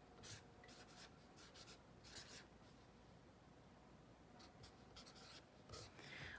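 Orange felt-tip marker writing on lined spiral-notebook paper: faint scratching strokes in a few short spells, with pauses between.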